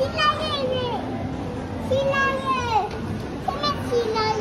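Young children's high-pitched voices calling out in long, drawn-out falling exclamations over a background of chatter.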